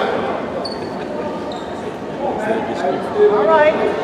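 A basketball being bounced on a hardwood gym floor, a player dribbling at the free-throw line before shooting, over spectators' voices.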